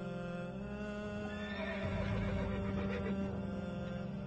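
A horse whinnying over a steady, droning music bed. The whinny comes about a second in and lasts about two seconds.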